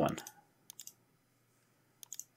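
A few quick computer mouse clicks, a little under a second in, with near silence around them.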